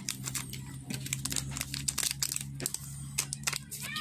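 Scissors snipping through a thin clear plastic bag, which crinkles and crackles as it is cut open and pulled off a small circuit board, in a quick irregular run of short snips and rustles.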